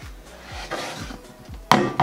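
A single sharp knock near the end as a metal L-shaped shelf bracket is set against the foot of a wooden fence-picket sign, with faint background music underneath.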